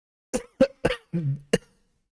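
A man coughing: a quick run of about five coughs in under a second and a half, the fourth a little longer than the rest.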